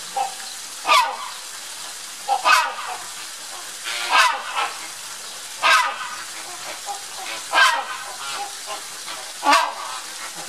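Rhinoceros hornbill calling: a series of loud, short, harsh calls, six in all, repeated evenly about every one and a half to two seconds.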